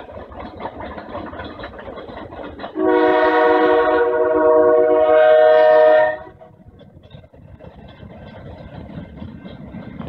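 Diesel locomotive air horn sounding one long blast of about three seconds, a chord of several steady tones, over the lower rumble of the moving train.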